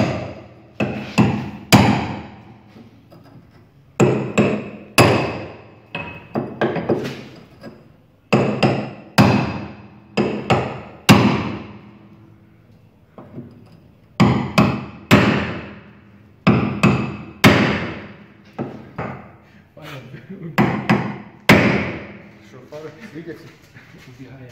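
Repeated hammer blows ringing on the steel front wheel arch of a ZAZ-965 Zaporozhets, irregular strikes coming singly and in quick pairs and threes with short pauses between. The arch is being beaten back so the front tyre no longer hits it when the wheel is turned.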